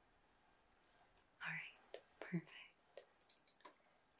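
Mostly quiet room tone with two short, soft-spoken female vocal sounds about one and a half and two and a half seconds in, then a quick run of light clicks near the end.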